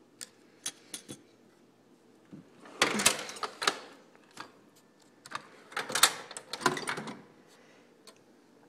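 Hand tools clinking and clattering as a toolbox is rummaged through for a small screwdriver: scattered single clicks, with louder spells of rattling about three seconds in and again around six seconds.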